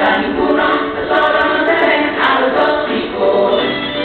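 A class of young children and their teacher singing a song together, several voices at once.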